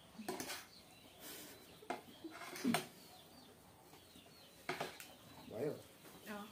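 Metal forks clicking and scraping against a ceramic plate as a heap of noodles is lifted and mixed, a few separate clinks. Two short vocal sounds come in, one a little before the middle and one near the end.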